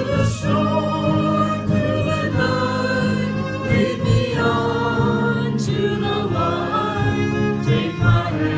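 A small praise band playing a worship song live: several voices singing together over acoustic guitar and violin.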